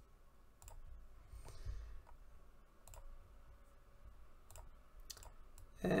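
Faint computer mouse clicks, a handful scattered irregularly over a few seconds, over a low steady background hum.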